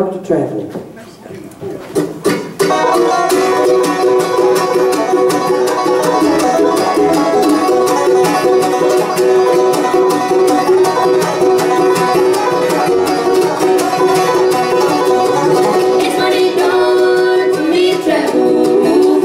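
A bluegrass band on banjo, mandolin, acoustic guitar and upright bass starts into a tune about two and a half seconds in, after a brief quieter moment, and plays on at full level.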